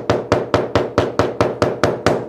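Mallet with a white plastic head tapping rapidly along a glued leather edge on the bench, a fast even run of about six taps a second, pressing the contact-cemented lambskin and veg tan together so the bond sets.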